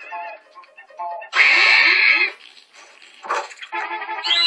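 Cartoon soundtrack: short musical notes, broken about a second and a half in by a loud, noisy sound effect lasting close to a second, with another short burst near the end before the music picks up again.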